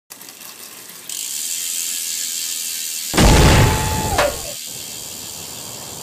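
Logo-intro sound effects: a steady fast ratcheting buzz, then about three seconds in a deep hit with a held tone that bends down and breaks off a second later.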